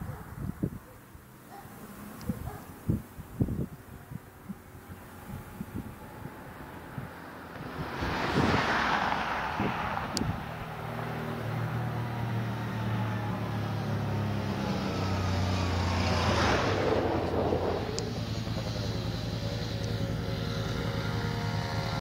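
Wind buffeting the microphone, then road vehicles passing close by, one about eight seconds in and another about sixteen seconds in, each swelling and dropping in pitch as it goes past. Underneath, from about eleven seconds on, an engine runs steadily, with a sport motorcycle close by at the end.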